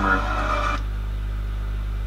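Soundtrack of a football highlight video, music with a voice, cutting off abruptly under a second in as the video is paused, leaving a steady low hum.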